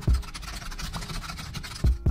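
Fast computer-keyboard typing sound effect: a dense, steady run of small clicks, with a short thump near the end.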